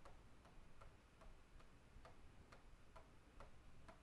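Near silence: room tone with faint, regular ticking, a little over two ticks a second.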